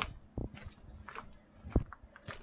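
Footsteps on gravel: a few separate steps, the loudest about three-quarters of the way through.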